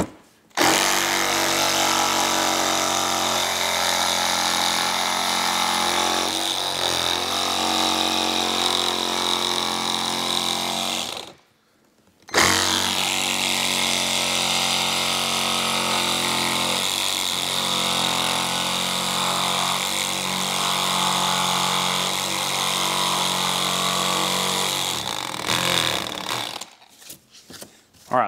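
Milwaukee one-handed cordless reciprocating saw (Hackzall) with a short scroll-cut blade cutting through a motorcycle saddlebag lid. It runs steadily in two long passes, stopping for about a second around eleven seconds in, and stops again shortly before the end.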